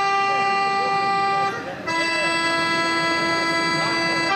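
A folk band's accordion holding two long chords, each about two seconds, the second a little lower, with the band playing along.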